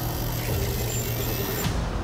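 Horror film trailer soundtrack: a steady low drone under a high hiss, and the hiss cuts off suddenly near the end.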